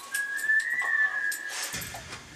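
A whistled note from a K-pop song's recording, played back from a teaser video. It is held for about a second and a half, rising slightly and then easing back down before it stops.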